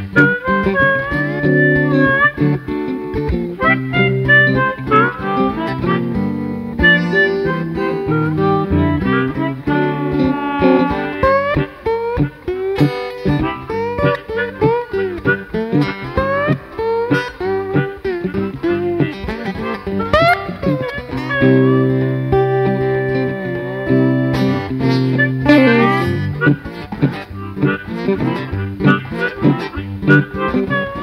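Instrumental blues break: a slide guitar plays lead, its notes gliding up and down in pitch, over a low guitar accompaniment.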